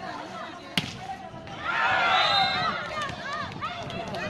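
A volleyball is struck once with a sharp slap about a second in. A crowd of spectators then breaks into loud shouting and cheering, loudest around the middle and fading toward the end, as the rally's point is won.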